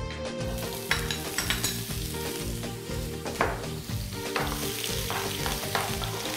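Onions sizzling as they fry in hot oil in a frying pan over high heat, with a few clicks of the utensil against the pan as they are stirred.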